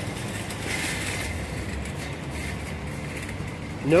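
Steady city street traffic noise from cars on the road, swelling slightly about a second in.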